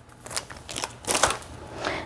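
Crinkly plastic packaging crackling and rustling in the hands, a few short irregular crackles, as a blister-style pack of ballpoint pens is handled and set down.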